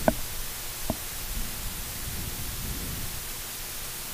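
Steady hiss of a broadcast feed's open line with a faint low rumble underneath, and two brief clicks, one right at the start and one about a second in.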